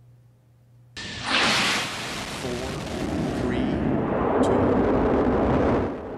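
Space Shuttle Endeavour's launch roar on STS-134, heard through the microphone of a camera on a solid rocket booster. A loud rushing roar starts suddenly about a second in as the main engines ignite, then runs on steadily.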